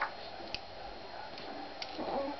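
A few short, sharp clicks, about half a second to a second apart, from a baby mouthing and sucking on a plastic teething ring attached to a plush toy; the first click is the loudest.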